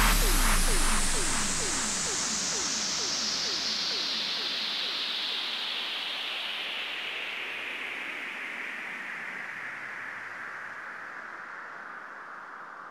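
Outro effect of an electronic dance remix: a white-noise sweep falling slowly in pitch while the whole sound fades steadily. A short falling blip repeats two or three times a second over it and dies away over the first half.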